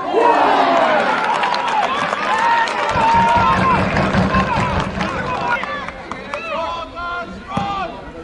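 A small football crowd cheering and shouting, many voices at once with scattered claps. It swells suddenly at the start and dies down after about six seconds.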